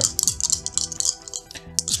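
Four plastic dice rattling as they are shaken in cupped hands, a quick run of clicks through the first second or so, over steady background music.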